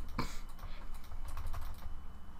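Computer keyboard keystrokes: a few scattered, irregular clicks.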